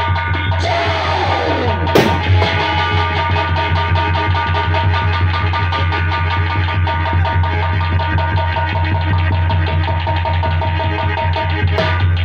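Loud music with a steady drum beat, broken about two seconds in by a single sharp bang: a blank fired from a prop rifle on stage.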